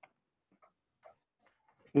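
A pause with a few faint, short clicks spread over two seconds, then a man's voice starting at the very end.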